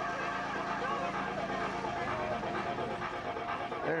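Voices of a group of people, several overlapping, heard at a distance over a steady low hum.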